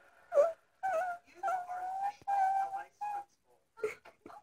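A child's voice crying in a series of about five long, high wails, most held on a steady pitch.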